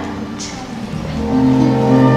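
Orchestral accompaniment of a stage-musical ballad, with no voice: a soft held note, then a sustained chord swelling in louder about a second in.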